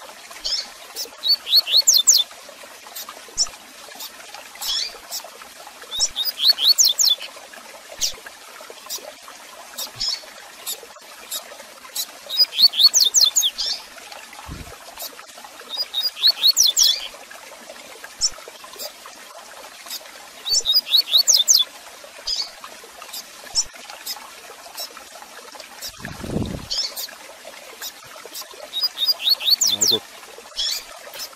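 Double-collared seedeater (coleiro) singing its 'tui tui zel zel' song: short phrases of quick, falling whistled notes every four to five seconds, with single chirps between them, over a steady trickling background. A low thud comes near the end.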